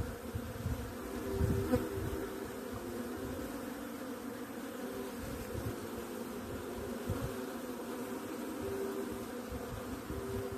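Swarm of honeybees buzzing steadily as they fly around and crowd a jar waterer, a dense hum with several overlapping pitches that shift as bees come and go. A brief low rumble sounds about a second and a half in.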